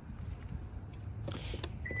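A low outdoor rumble with faint handling noise. Near the end comes a short rustle with a couple of clicks, and just before the end a high, steady beep begins.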